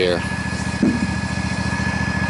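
Engine idling steadily, with a thin steady high tone over it. A short low voice sound about a second in.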